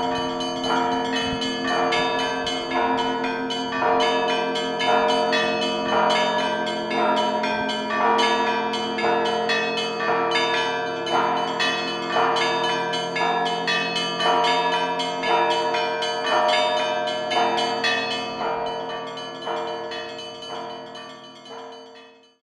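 Church bells ringing in a steady run of strikes, each tone ringing on into the next, fading out near the end.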